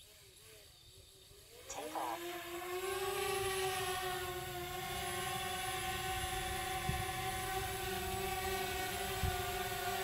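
DJI Spark quadcopter's motors spinning up about two seconds in with a short rising whine. The drone lifts off and settles into a steady, even propeller hum as it hovers.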